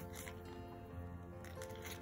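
Quiet background music with steady held notes, with a few faint crinkles from a small plastic packet being handled: one near the start and two close together near the end.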